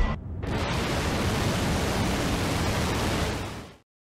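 Steady rushing-noise sound effect that fades out near the end.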